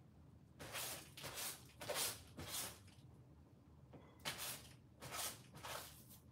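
Clothes being handled and sorted in a pile, giving short bursts of fabric rustling: about four in the first three seconds, a pause, then three more near the end.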